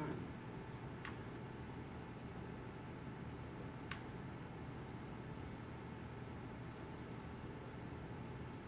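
Quiet room tone: a steady low hum and hiss, with a couple of faint clicks about a second in and again near the middle.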